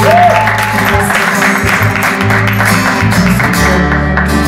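Live band playing: a woman's sung note right at the start over acoustic guitar strumming and a steady bass line.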